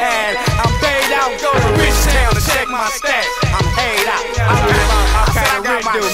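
Hip hop track: rapped vocals over a beat with deep bass notes.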